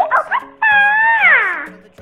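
A high-pitched voice calls out the name "Cleopatra", stretching the last syllable into a long held cry that slides down in pitch, over background music.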